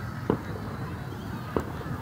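Two distant fireworks going off, sharp bangs just over a second apart.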